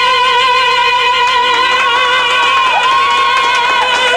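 Two operatic tenors singing without accompaniment, holding one long high note together with a steady vibrato.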